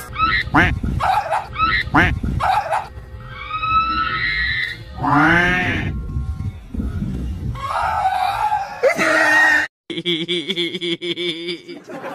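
Dog yelping and squealing in high, repeated cries over background music.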